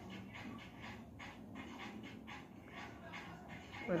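Kitchen knife chopping scallions on a wooden cutting board: quiet, regular strikes, about three a second.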